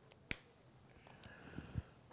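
A single sharp click about a third of a second in, then two faint soft knocks near the end, over quiet room tone.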